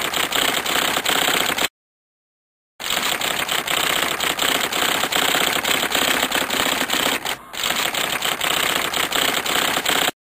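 Typewriter keys clacking in a fast, continuous run of keystrokes. It stops dead for about a second near the start, then types on.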